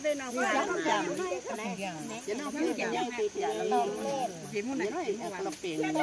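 Several women talking and chatting over one another, with a steady high-pitched insect drone behind the voices.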